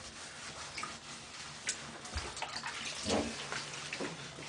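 Light water splashing and a washcloth rubbing on a baby in a shallow bath, with a few small clicks and drips. A brief voice sound about three seconds in.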